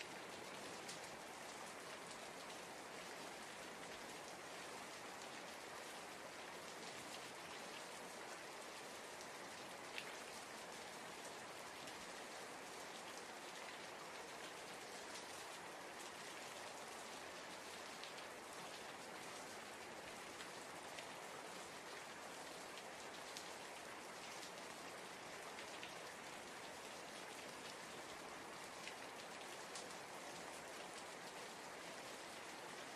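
Steady rain falling, with scattered drop ticks and one slightly louder tick about ten seconds in.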